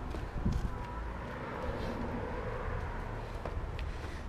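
Soft footsteps on wet concrete and mud, over a steady low rumble of background noise.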